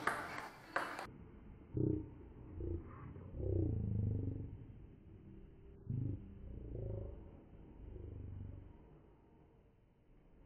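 A few sharp taps of a table-tennis ball off the racket and the table, spaced out, with a low wavering rumble underneath that comes and goes.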